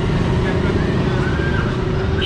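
Steady low rumble of street traffic, with a faint steady hum and faint distant voices.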